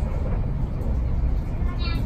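Steady low rumble of a moving train heard from inside the passenger carriage, with a voice starting near the end.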